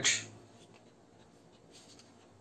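Faint scratching of a pen drawing lines along a plastic ruler on paper.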